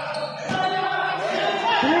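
Basketball game sounds: a ball bouncing sharply on the hard court about half a second in, with players' voices in the background.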